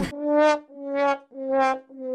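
Comic brass sound effect added in editing: three short swelling notes, each a little lower than the last, with a fourth, longer note starting at the end, in the manner of a sad-trombone 'wah-wah-wah-waah'.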